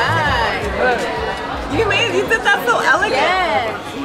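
Close conversation among diners over background music and the chatter of a busy restaurant dining room.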